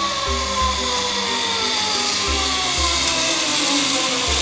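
A zip-line trolley's pulley running along the steel cable, with a whine that falls steadily in pitch as the rider slows. Background music with a bass beat in pairs about every two seconds plays over it.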